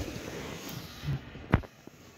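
Handling noise of a phone camera held against cloth and fingers: rubbing and scraping, a soft low thud about a second in, and a sharp knock about one and a half seconds in.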